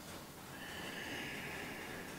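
A steady, breathy hiss starting about half a second in and lasting about a second and a half: a person breathing out audibly.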